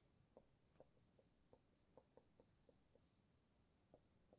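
Very faint marker strokes on a whiteboard, an irregular series of short ticks as letters are written.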